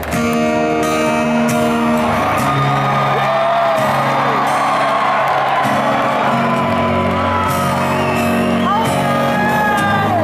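Live acoustic guitar chords ringing out in a large hall, with scattered whoops and shouts from the audience over the music.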